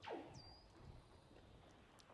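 Near silence: faint room tone, with one brief, faint falling sound right at the start.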